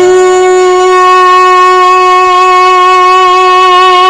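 A male folk singer holding one long, loud sung note at a steady pitch, without words, in a Sindhi Sufi song.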